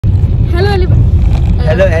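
Steady low rumble of a car heard from inside the cabin, under a brief voice sound about half a second in and a woman's greeting beginning near the end.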